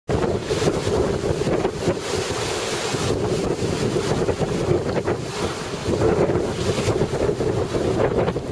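Wind buffeting the camera's microphone: a continuous rush, heaviest in the low end, that keeps swelling and easing in gusts.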